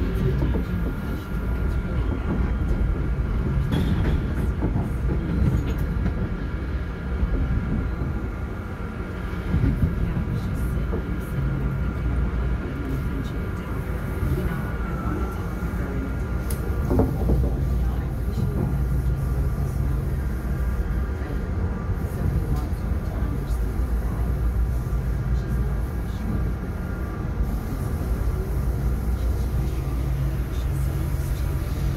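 Inside a Metrolink passenger coach in motion: the steady low rumble of the wheels on the track, with a steady hum of several pitches over it and a few short knocks along the way.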